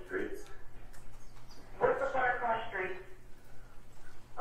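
Voices from a recorded 911 phone call played back over courtroom speakers: muffled, phone-quality talk in two short stretches.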